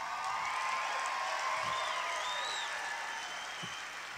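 Concert audience applauding, a steady wash of clapping with a few whistles, easing off slightly toward the end.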